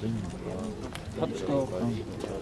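Indistinct voices of people talking, in two short stretches.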